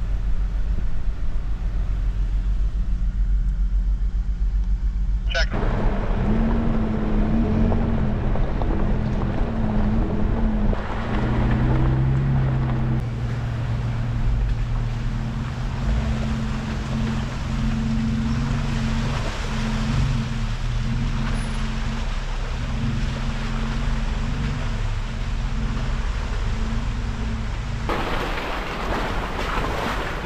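Jeep engine running at low speed, its pitch wavering up and down with the throttle under a steady hiss, heard from inside the cab. The sound changes abruptly about five seconds in and again near the end.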